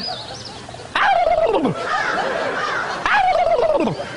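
A man imitating a turkey's gobble with his voice: two loud gobbling calls, one about a second in and one near the end, each sliding down in pitch. A brief faint high whistle comes at the very start.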